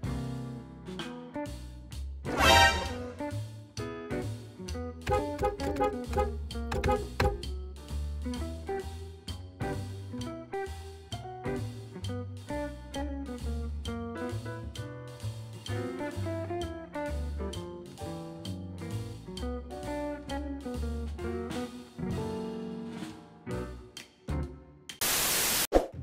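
Background music with a steady beat, pitched melody notes and a bass line. Near the end comes a brief loud burst of noise.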